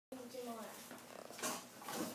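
A child's voice, brief and indistinct, then a short burst of noise about one and a half seconds in.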